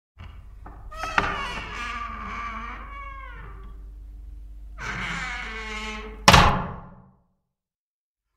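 Channel-intro sound effects: pitched, wavering tones for several seconds, then a single loud thud a little over six seconds in that dies away quickly.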